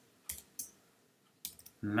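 A few scattered keystrokes on a computer keyboard: about four separate sharp clicks, spaced out rather than in a steady run.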